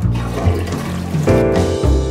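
A toilet flushing, a rush of water that dies away after about a second, over background music with a steady bass line.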